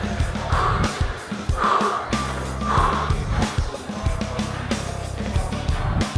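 A weightlifter's heavy, forceful breathing as he grinds through a hard set of hack squats, a breath about every second, over background music.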